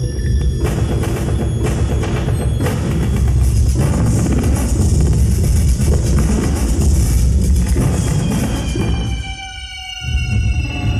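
Dark electronic sound score from a robotic stage performance. It is a heavy low rumble with sharp percussive hits about a second apart in the first few seconds, then a dense noisy wash. Near the end it thins out and gliding tones fall in pitch.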